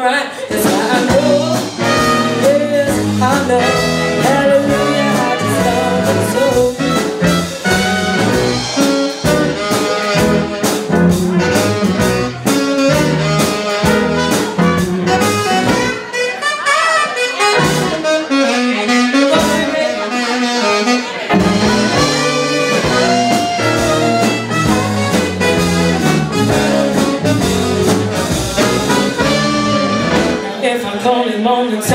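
Live soul and rhythm-and-blues band playing, with trumpet and tenor saxophone over electric bass and guitar and a steady beat.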